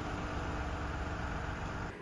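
A steady low outdoor rumble with a faint hum running through it, which drops away near the end.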